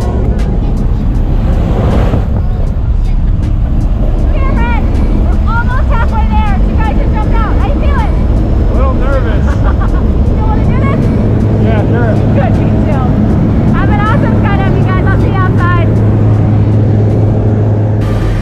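Steady drone of a small jump plane's engine heard inside the cabin during the climb, growing stronger in the second half, with a voice rising and falling over it in the middle.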